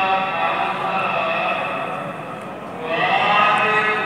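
A man's voice chanting Gurbani in long, drawn-out sung phrases. It fades a little past two seconds in, and a new phrase comes in about three seconds in.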